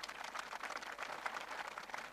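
Audience applauding faintly: a dense patter of many hands clapping in a steady stream.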